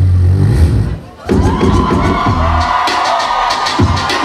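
Live beatboxing with deep bass hits for about a second, then a brief drop. After that comes DJ music with gliding turntable-scratch tones over a cheering crowd.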